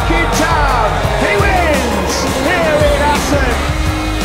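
Music: a song with a heavy low beat and a vocal line sliding up and down in pitch.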